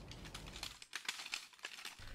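Loose flat slate pieces clinking faintly underfoot in a scatter of light, irregular clicks that thin out in the second second.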